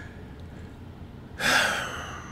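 A man's single audible breath into a close microphone about one and a half seconds in, a short rush of air that fades over about half a second, after a quiet pause.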